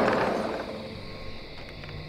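A sliding glass patio door being rolled open: a sudden rolling rush that fades away over about a second, leaving a low steady hiss.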